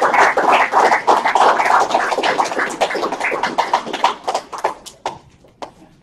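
Audience applauding, thinning out about four seconds in, with a few last separate claps before it stops.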